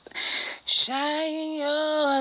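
A woman singing unaccompanied: two short hissing consonant sounds, then a long held note that starts about a second in and wavers slightly in pitch.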